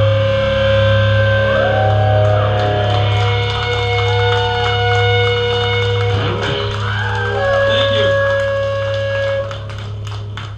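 Electric guitars through amplifiers ringing out with held notes and feedback tones, some gliding in pitch, over a steady amplifier hum, with no drums. The sound of a song's last chord left to sustain and feed back at the end of a song. It eases down near the end.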